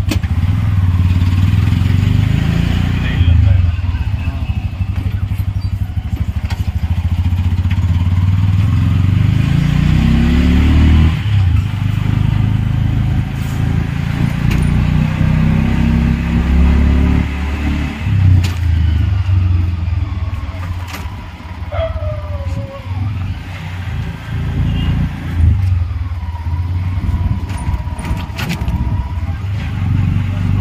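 Auto-rickshaw's small engine running, heard from inside the open passenger cabin as a low rumble. Its pitch rises a few times as it pulls away and accelerates through the gears, and it eases off a little later on.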